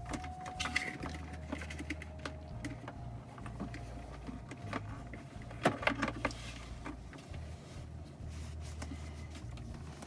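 Scattered plastic clicks and taps as a wireless charging pad is shifted and seated on a car's center-console charging panel, the loudest cluster about six seconds in, over a low steady hum.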